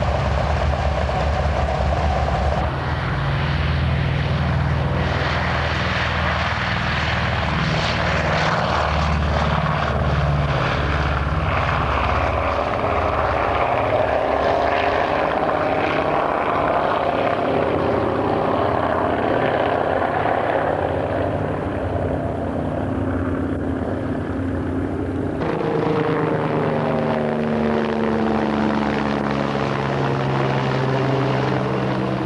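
Junkers Ju 52 trimotor's three radial engines running as it taxis, then flying low past the field, the pitch shifting as it goes by. About 25 seconds in the sound cuts abruptly to a helicopter flying overhead, its note sweeping in pitch.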